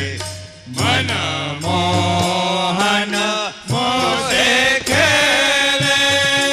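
Swaminarayan Holi kirtan: men singing a devotional chant together to harmonium and tabla, with a long held note near the end.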